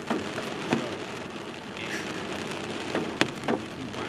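Rain falling on a car, heard from inside the cabin: a steady hiss with a few louder, sharper drop strikes, several of them in the second half.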